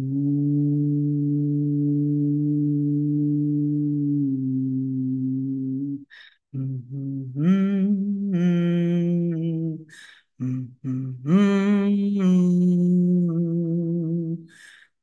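A woman humming an improvised wordless tune with closed lips. First comes one long low note held for about six seconds. After a quick breath she moves on to higher notes that rise and fall, with another short breath at about ten seconds in.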